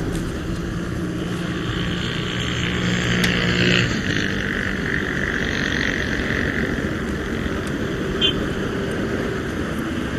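Steady outdoor background noise from a field microphone, with a low hum that stops about four seconds in.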